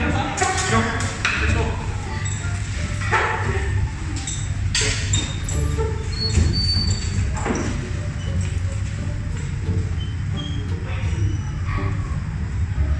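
Background music with a steady low beat, under brief talking near the start and a few knocks and bumps from chairs and bags as people get up and leave the room.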